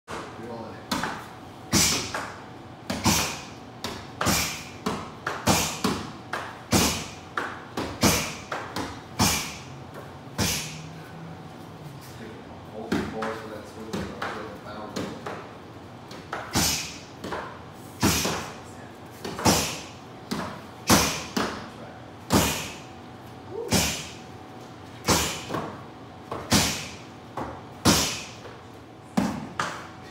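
Punches repeatedly smacking a handheld makiwara board, a sandbag on the mat and a focus pad: sharp hits, roughly one or two a second and irregular, with a short echo after each.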